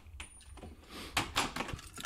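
Short metallic clicks and rattles of something being handled, clustered a little over a second in.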